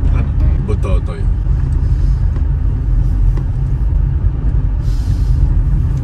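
Steady low rumble of a car's engine and road noise heard inside the cabin, with a voice briefly in the first second.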